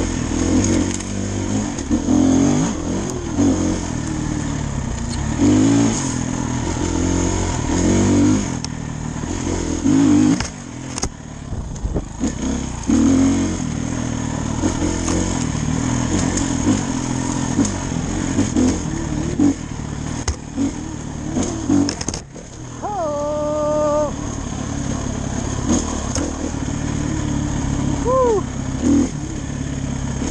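Dirt bike engine under way on a rough trail, its pitch rising and falling constantly with the throttle. The engine note drops away sharply twice, about a third of the way in and about three-quarters of the way through, then picks up again.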